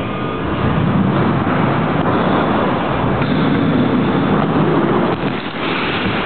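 Wheels rolling over skatepark concrete: a steady rolling noise that dips briefly a little before the end.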